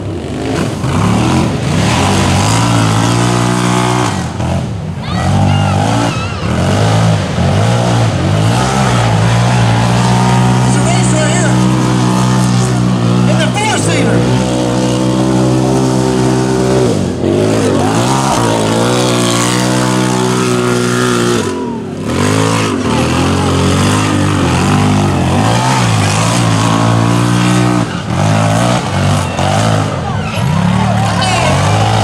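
Several side-by-side UTV engines running hard while racing, their pitch rising and falling with throttle and gear changes, with a short easing off about twenty-two seconds in.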